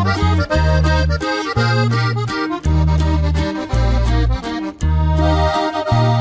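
Instrumental break in a norteño corrido: an accordion plays the melody over a steady bass line and strummed accompaniment, with no singing.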